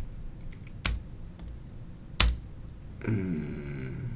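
Two sharp computer-keyboard key presses about a second and a half apart, with a few faint ticks between them. A voice starts near the end.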